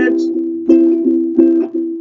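Ukulele strumming a chord in a steady rhythm, a fresh strum about every two-thirds of a second.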